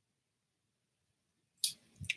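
Near silence, then a single short, sharp noise near the end.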